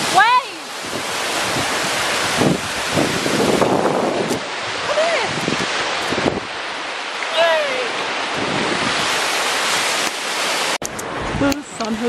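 Surf washing onto the beach with wind buffeting the microphone, a steady loud rush throughout. A few short voice calls or laughs break in near the start and around the middle.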